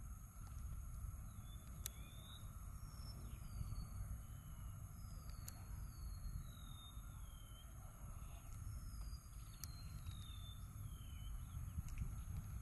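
Faint outdoor ambience: a bird calling with short falling whistled notes, several in a row, over a steady high hiss and a low rumble.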